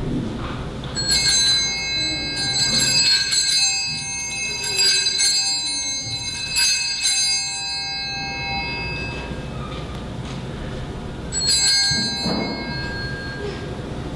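Altar bells shaken at the elevation of the consecrated host: a long peal of quick, repeated bright rings from about a second in that dies away, then a second, shorter ringing near the end, marking the consecration of the bread.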